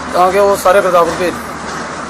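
A man speaking: one burst of talk in the first second or so, then quieter.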